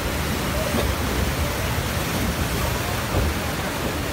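Steady rushing of water in an amusement-park water ride's artificial rapids and falls, an even hiss with no breaks.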